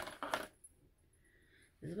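A few quick, light clicks and clatters of small objects being handled, then quiet, with a woman starting to speak near the end.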